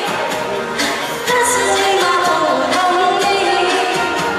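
A woman singing a pop song into a handheld microphone, amplified through a portable busking speaker over a backing track.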